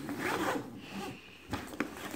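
Zipper on a rolling bowling bag's main compartment being pulled open, a quick rasping run, followed by a couple of light knocks near the end as the lid is lifted.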